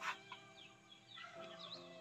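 Faint bird calls: a few short chirps over a quiet background, with a brief click at the very start.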